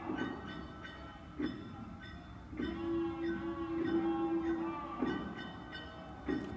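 Music from an Okinawan street procession: drum strikes every second or two under long held notes, with one strong note held for about two seconds in the middle.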